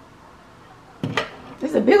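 A short clatter of hard toy dollhouse pieces being knocked and handled by a child's hand, about a second in.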